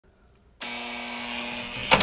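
A steady mechanical whir with a low hum switches on abruptly about half a second in, and a sharp click sounds near the end.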